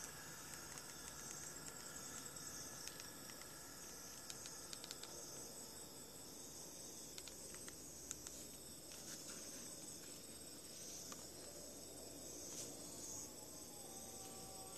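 Faint, steady, high-pitched insect chirring in the background, with a few soft clicks scattered through it.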